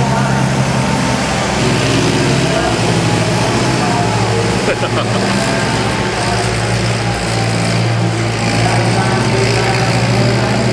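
Massey Ferguson 1540 compact tractor engine running steadily while pulling an arena groomer over dirt, with indistinct voices in the background.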